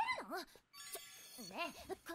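High-pitched anime girl's voice in Japanese dialogue, calling out in short rising-and-falling exclamations. A brief high tinkle sounds about a second in.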